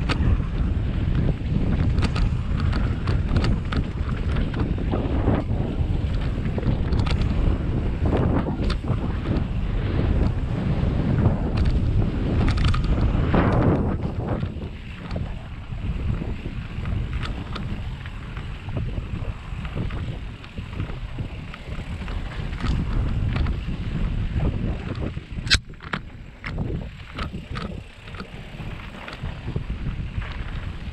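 Wind buffeting the microphone and bicycle tyres rolling over a dirt singletrack on a mountain-bike descent, with short clicks and rattles from the bike over bumps. The wind drops about halfway through, and a sharp click comes near the end.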